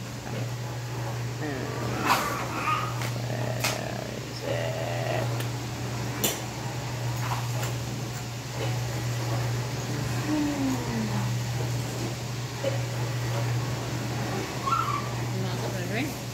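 Loose plastic LEGO Technic pieces clicking and rattling as they are sorted by hand on a wooden table, a few sharp clicks standing out. Under it runs a steady low hum from a kitchen appliance, with faint voices in the background.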